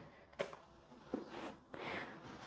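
Faint, soft taps and scuffs of a sneakered foot as a front kick is drawn back from a wall and set down on the gym floor, a few short ticks over quiet room noise.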